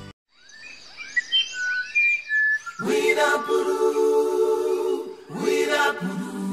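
Birdsong of clear, whistled chirping notes for about two seconds. Then an a cappella vocal group comes in about three seconds in on a long held chord, breaks off briefly and starts again near the end: the opening of a radio station's sung jingle.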